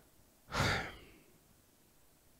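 A man's short sigh: one breathy exhale close to the microphone, about half a second in.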